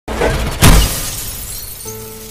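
A glass window pane shattering as a dog crashes through it. The loudest smash comes a little over half a second in and fades away, and held music notes come in near the end.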